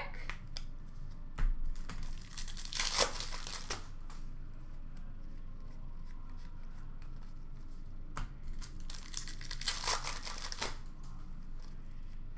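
Trading card packs and cards being handled: two rustling, tearing bursts about a second long, one around three seconds in and one around ten seconds in, with light taps between.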